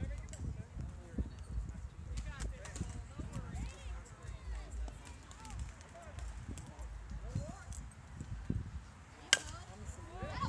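Background voices of spectators with a low rumble on the microphone, then near the end a single sharp crack of a bat striking a pitched ball, the loudest sound here.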